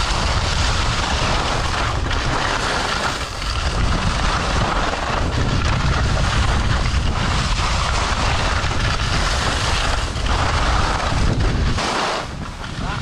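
Wind rushing over the microphone while riding down a ski slope at speed, with the scraping hiss of edges on groomed snow that eases and swells every couple of seconds as the rider turns.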